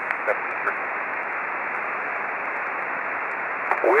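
Single-sideband receiver audio of an HF transceiver between calls: a steady band-noise hiss with the high end cut off by the receive filter, with faint traces of distant voices in it. Just before the end a replying station's voice starts to come up out of the noise.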